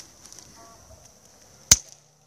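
Red-handled bypass secateurs snipping once through the stem of a young quince tree, a single sharp snap near the end, as the leader is cut back to shape the crown.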